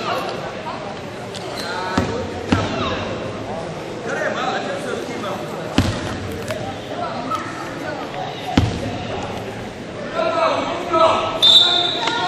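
A ball bouncing on a hardwood sports-hall floor, four sharp thuds at uneven intervals, with voices talking in the echoing hall.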